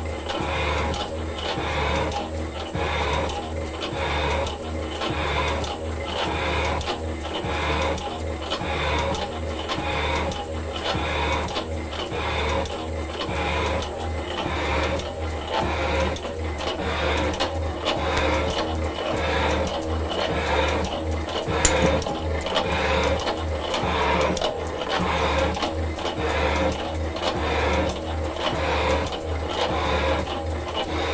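Metal shaper running under power feed and cutting a cast iron block. The ram's back-and-forth strokes give a steady, evenly repeating scrape as the tool bit cuts, over a low motor and gear hum. There is a single sharp click about two-thirds of the way through.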